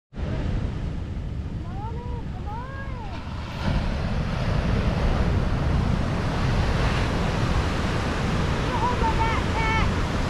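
Surf breaking and washing over a rocky shore as a steady roar, growing louder a few seconds in, with wind rumbling on the microphone.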